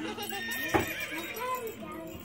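Electronic baby toy playing a recorded horse neigh. A sharp click comes about three-quarters of a second in, followed by a wavering whinny.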